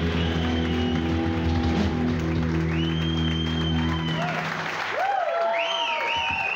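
Live rock band's electric guitars and bass holding a final sustained chord that stops about four seconds in. An audience applauds and whistles over it.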